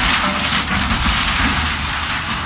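Excavator tearing into the roof of a wooden house: a dense, steady crackling of splintering timber and falling debris.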